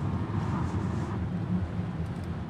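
Steady rumbling outdoor noise of a handheld phone recording, with wind on the microphone.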